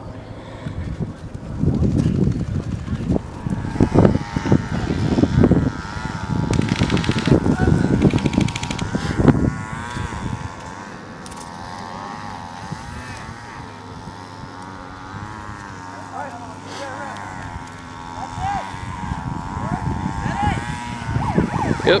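Two short rapid bursts of distant airsoft gunfire, about seven and nine seconds in, over wind rumbling on the microphone, with far-off shouting voices later on.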